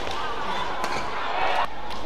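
Badminton court sound in an indoor hall: a few sharp knocks of play on the court over a steady echoing hall background with voices.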